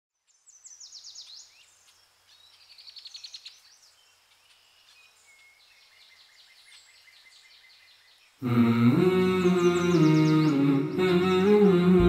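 Faint birdsong, quick high chirps and trills, for the first eight seconds. About eight and a half seconds in, a much louder hummed vocal chord enters abruptly and moves through slow chord changes, the backing of the song's intro.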